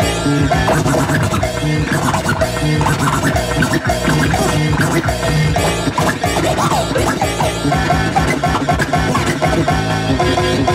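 Vinyl record scratched by hand on a DJ turntable: quick back-and-forth pitch sweeps cut over a music track played through a sound system.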